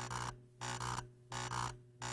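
Electronic sound effect of a toy robot switching on: a steady electric hum under three buzzing pulses, about two-thirds of a second apart.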